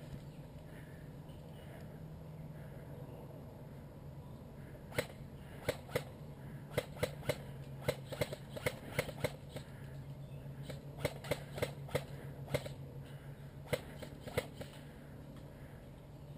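Airsoft guns firing: about twenty sharp pops, single and in quick irregular runs, from about five seconds in until near the end, over a steady low hum.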